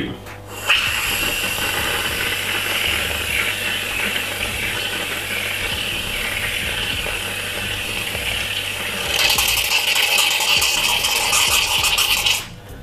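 Aerosol can of sweet dairy whipped cream spraying in one long steady hiss, which grows louder and brighter about nine seconds in.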